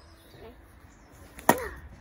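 One sharp knock about one and a half seconds in, with a short ring after it: a chunk of wood struck down on the back of an axe set in a short oak log, splitting the oak in a single blow.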